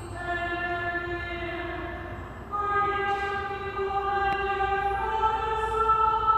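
Slow church hymn music with long held notes, stepping up in pitch twice.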